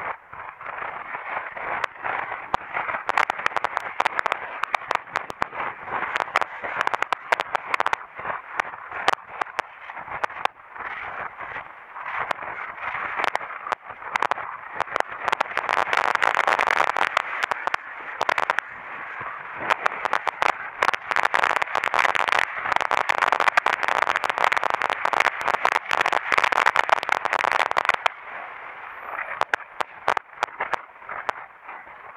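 Continuous rushing noise with dense, crackling clicks: wind and riding noise hitting a camera microphone on a moving bike. It swells louder through the middle and drops back near the end.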